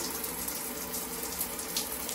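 Tap water running steadily, flowing into and over a plastic lotion-pump dip tube held in the stream to flush residue out of it.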